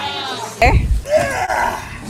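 A person's voice with wavering pitch, cut into by a sudden loud low thump about half a second in, then more voice sounds rising and falling in pitch.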